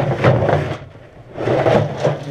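Two bursts of rustling and scraping close to the microphone, about a second and a half apart, from movement among metal feed bins and feed sacks.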